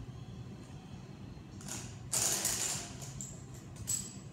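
Dip belt's metal chain rattling and scraping against weight plates as they are hooked on and lifted off the floor, loudest a little after two seconds in, with a sharp clink just before the end.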